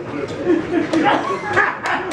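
A person's voice sounding through most of the stretch, with one sharp click near the end.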